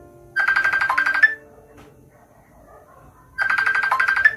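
A phone call ringing: two trilling rings, each about a second long and three seconds apart, over soft background music.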